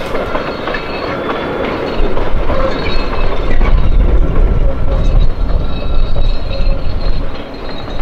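Train running along the track: a steady rumble of wheels and rails that gets louder about two seconds in.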